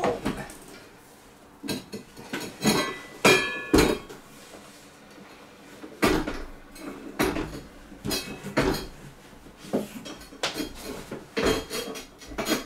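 Irregular knocks and clatters, a few with a brief ringing tone, as a Starlink dish on its tripod is worked out through a roof window, bumping against the window frame and roof tiles.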